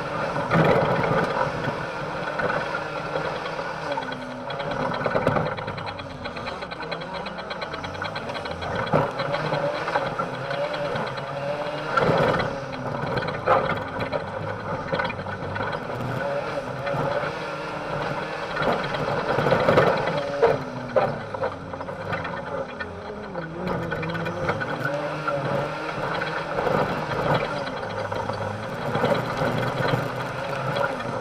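Autocross race car's engine heard from inside the cabin, its revs rising and falling every few seconds through gear changes and corners on a dirt track. Occasional knocks and bumps are heard over a steady noise of the car running on loose ground.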